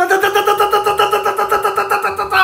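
A man's voice holding one long, steady buzzing note with a rapid, even flutter, like a playful engine or rolled-r noise.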